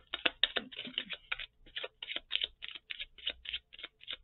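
A deck of tarot cards being shuffled by hand: a quick, irregular run of short card snaps and clicks, about five a second.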